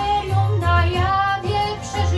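A young woman singing a Polish Christmas pastorałka in held, gliding notes over a musical accompaniment with a low bass line.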